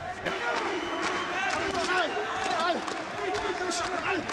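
Men's voices calling out around a boxing ring, with a few short thuds of gloves and feet on the canvas.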